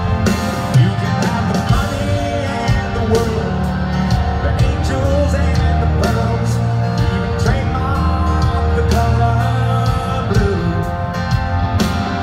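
Live rock band playing full-on, with drums, electric guitars and bass under a sung lead vocal, as heard from the crowd in a large arena.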